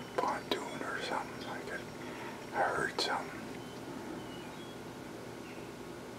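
A man whispering a few words in two short stretches, with a sharp click about three seconds in.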